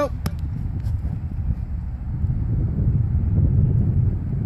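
Wind rumbling on the microphone, growing louder toward the end, with a single sharp click near the start.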